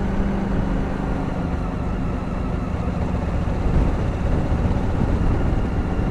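Honda Africa Twin 1000 parallel-twin engine running at a steady cruising speed, its even low note under a steady rush of wind and road noise.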